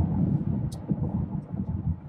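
Steady low road and tyre rumble heard inside the cabin of a 2023 Tesla Model X Plaid driving at highway speed, with no engine sound under it.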